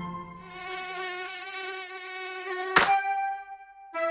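Cartoon mosquito buzzing sound effect, a wavering whine over held music notes, cut off about three quarters of the way through by a sharp snap as the gecko catches the mosquito.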